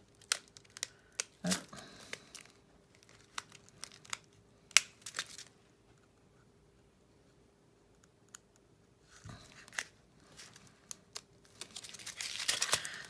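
Scattered sharp clicks, taps and crinkles of clear tape being picked and cut off a small plastic seed-bead box with fingers and small scissors. There is a quiet pause in the middle, then more crinkling and clicking near the end.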